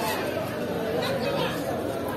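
People talking, with overlapping chatter.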